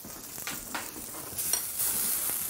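Butter sizzling in a cast-iron skillet of asparagus, growing louder toward the end. A few clicks and a metal scrape as the skillet is taken hold of and lifted off the electric coil burner.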